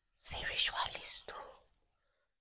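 A person whispering for about a second and a half, in short broken phrases.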